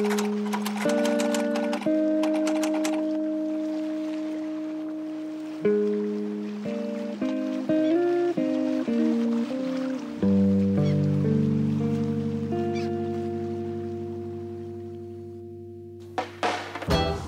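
Solo piano playing slow chords, each struck and left to ring and fade. A quicker run of notes comes in the middle, then a low chord rings out and dies away slowly to the end.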